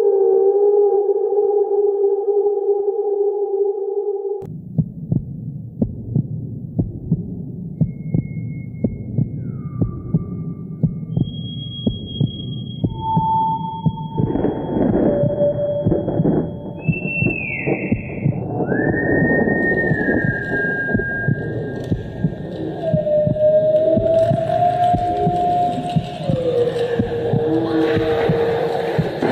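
Eerie horror-style soundtrack. A held, wavering tone cuts off abruptly about four seconds in. A low rumble with a steady heartbeat-like thump about once a second follows, while long high tones slide in and out above it.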